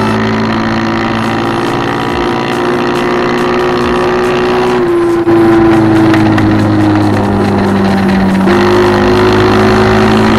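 TVS Jupiter scooter's single-cylinder four-stroke engine running through a custom exhaust while riding, a steady exhaust note. Its pitch sags a little about halfway through and picks back up near the end.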